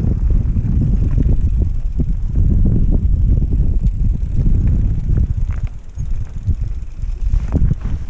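Mountain bike riding down a loose gravel and stony trail, tyres crunching and the bike clattering over rocks, with heavy wind buffeting on the helmet-mounted microphone. It eases briefly about six seconds in.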